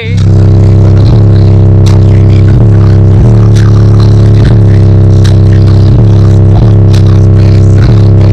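Car audio system playing a bass track through two 15-inch Tantric Sounds SHD subwoofers in a ported box, heard inside the car's cabin. A deep, steady bass note with short breaks every second or so, so loud that it overloads the recording.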